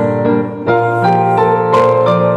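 Two women singing a Spanish hymn into microphones over electric piano accompaniment, in held, slow notes.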